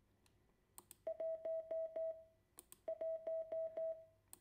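Morse code beep tone keyed out as the digit one, dit followed by four dahs, sent twice: once starting about a second in and again near three seconds. A couple of faint clicks come just before the first sending.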